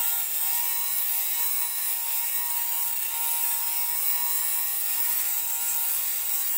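Torras USB-rechargeable lint remover (fabric shaver) running steadily over a wool coat: its small motor hums at an even pitch with a high hiss as the spinning blades shave the bobbles off the fabric.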